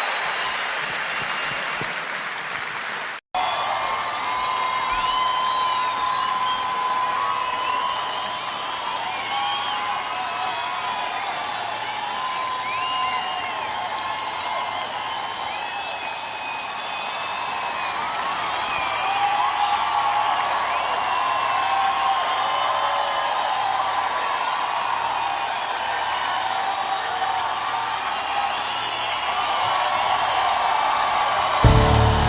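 Live concert audience applauding and cheering, with whistles rising over the clapping. The sound drops out for an instant about three seconds in, where one recording is spliced to the next.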